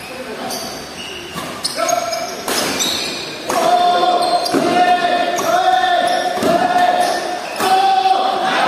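A badminton rally in a large hall: sharp racket strikes on the shuttlecock, several in a few seconds, with echo. From about halfway in, shoes squeak on the court floor in a run of long, high squeals.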